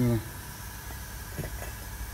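A short spoken word at the start, then a quiet steady background with a few faint light ticks.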